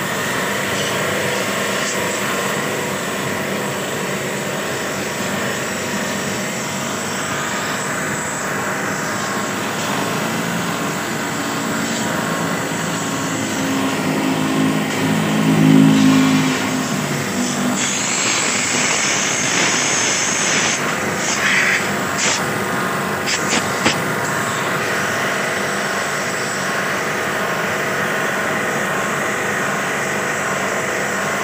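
Portable electric pressure washer running steadily, its pump motor humming over the hiss of the water jet spraying into the fins of a split-AC outdoor condenser unit. A deeper hum swells about halfway through, and a few short sharp spatters follow.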